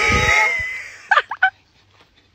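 Two leaves pressed together and blown between the lips like a reed, giving a loud, buzzing, bleating call as an imitation of a koala. The call fades out within the first second, and three short squeaks follow about a second in.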